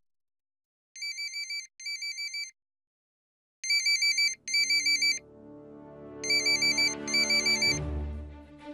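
Mobile phone ringing with an electronic warbling ringtone: three pairs of short trilling rings, the first pair quieter than the two that follow.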